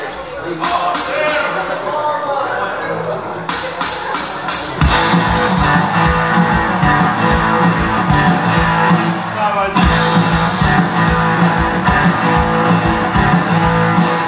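Live rock band playing through a stage PA: electric guitars carry the first few seconds, then drums and bass come in with a steady beat about five seconds in.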